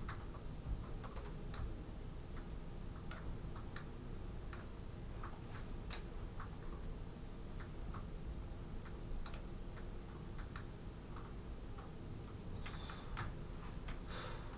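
Laptop keyboard typing: scattered, unevenly spaced key clicks from several people typing, over a steady low room hum.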